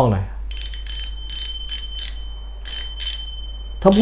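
Spinning reel (Pioneer Cyclone 6000) clicking as its spool is turned by hand: a run of sharp metallic clicks, a few a second, with a high ringing behind them, starting about half a second in.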